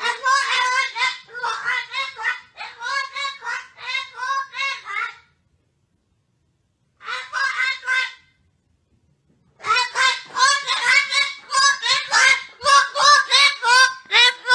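A white parrot letting out quick runs of pitched, speech-like squawks in three bursts, broken by two pauses of a second or two.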